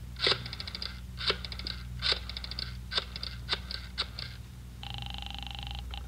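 Rotary telephone being dialled: about six runs of rapid, even clicks as the dial spins back for each digit, then a steady buzzing ring tone for about a second near the end.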